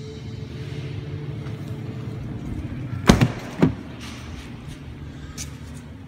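Two loud clunks about half a second apart, a little after the middle, as the rear door of a Ford F-350 crew cab is opened, over a steady low hum.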